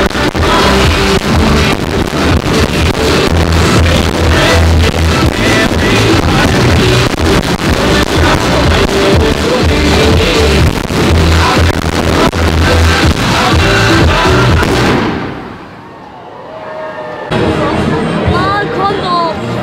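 Loud music with a deep bass line accompanying a fireworks display, with the sharp bangs and crackles of the fireworks going off throughout. About fifteen seconds in the music fades away, and crowd voices come in just before the end.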